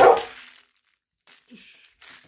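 A dog barks once, loudly, right at the start, the bark dying away within half a second.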